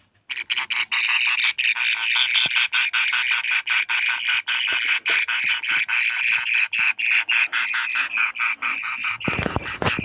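Baby budgerigar chicks calling in a loud raspy chatter, broken into rapid pulses several times a second. Near the end there is a low rumble of handling noise.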